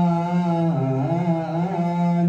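Men's voices chanting an Ethiopian Orthodox mezmur (hymn) in unison, holding a long note that dips in pitch and wavers about a second in before settling again.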